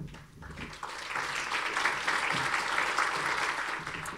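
Audience applause from a conference hall crowd welcoming a speaker. It swells up within the first second and holds steady. A brief low thump comes right at the start.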